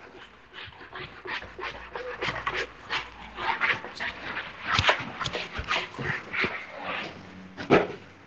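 A whiteboard being wiped clean by hand, about two to three quick rubbing swishes a second. The strokes stop near the end.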